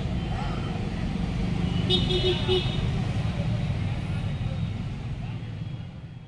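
Street traffic rumble, with three short horn beeps about two seconds in; the sound fades out near the end.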